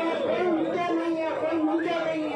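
Several people talking at once: overlapping conversation, with no other sound standing out.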